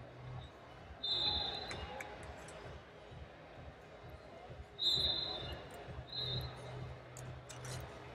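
Wrestling-arena ambience: four short, high, steady whistle-like tones about half a second each (about a second in, near five seconds, near six seconds and just after the end), scattered knocks and thuds, and faint distant voices.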